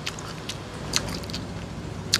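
Close-up chewing with a few short sharp clicks, from the mouth and from a metal spoon in the dish, over the steady low hum of an electric fan.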